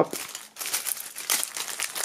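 Clear plastic shrink-wrap being peeled and torn off a CD digipak, crinkling and crackling irregularly.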